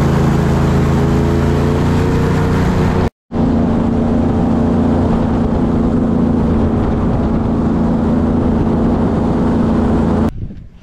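Airboat's engine and propeller running at speed across the water, a loud, steady drone. The sound cuts out completely for a moment about three seconds in, then resumes.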